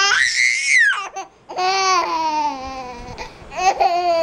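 Baby squealing in high-pitched, crying-like calls: a short shriek that rises and falls in the first second, a longer call sliding down in pitch, and another brief call near the end.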